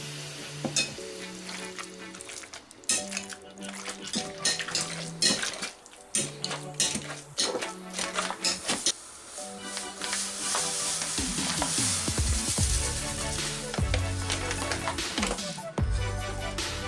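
Wire potato masher crushing soft boiled quince in a glass bowl: repeated clicks and squelches as it strikes the mash and glass, over background music. About ten seconds in it gives way to a steadier hissing rustle lasting several seconds.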